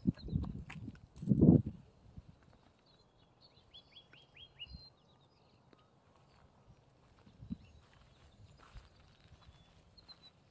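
A small songbird sings a quick run of about six short high notes, each dropping in pitch, around four seconds in, with faint chirps elsewhere. Two loud low thumps come in the first two seconds, along with light scattered steps on a dirt trail.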